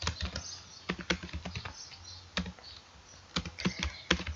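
Typing on a computer keyboard: irregular keystrokes in short runs, with a couple of brief pauses in the middle.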